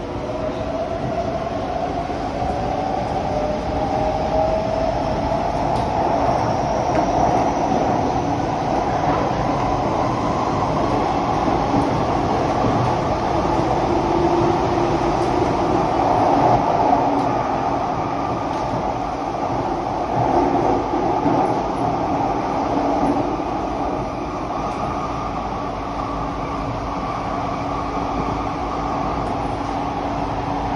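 Inside an SMRT C151B metro car running in a tunnel: the electric traction motors whine, rising in pitch over the first several seconds as the train picks up speed. After that comes the steady running noise of wheels on rail.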